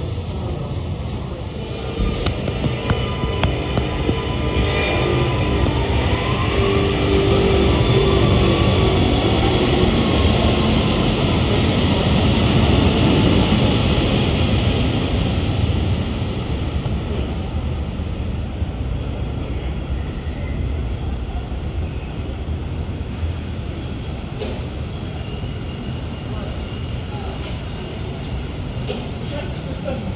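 Sydney Metro Alstom Metropolis train pulling out of the station and accelerating away. Its traction motors give a whine that rises in pitch over the rumble of the wheels, loudest in the first half, then fading as the train recedes.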